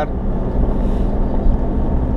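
Vehicle engine running steadily under load with a low rumble, heard from inside the cabin while climbing a steep gravel mountain road, the engine working hard on the grade.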